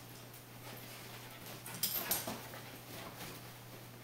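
Small dog panting, with a few short breaths about two seconds in, over a faint steady low hum.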